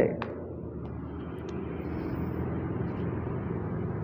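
A steady low mechanical hum with no change through the pause.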